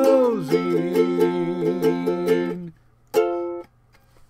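Ukulele ending a song: the last sung note slides down at the start, then quick, even strumming on sustained chords stops short, and a single final chord is strummed about three seconds in and rings briefly.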